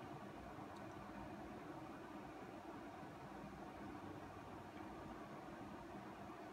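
Quiet, steady room tone: a faint even hiss with a low rumble underneath, and no distinct sound events.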